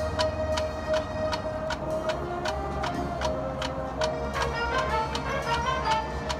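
Marching band playing a soft passage: a steady percussion tick about four times a second runs over a long held chord. Short ringing pitched notes enter about halfway through and climb in a short run near the end.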